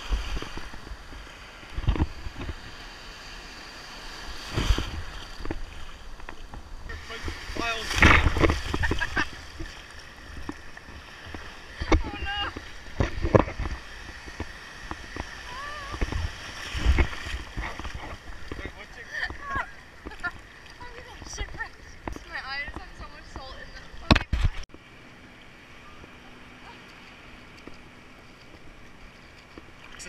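Surf and splashing water right at a camera held at the water's surface, with irregular loud whooshes and splashes as waves wash over the inflatable float, and voices and laughter breaking in now and then. About 25 seconds in it settles to a quieter, steadier wash of water.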